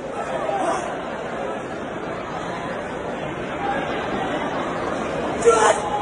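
Spectators' chatter filling a large indoor hall, a steady murmur of voices, with a brief sharp sound about five and a half seconds in.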